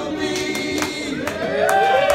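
Several voices singing together in long held notes from a live rock band's performance, with a few sharp hits in between.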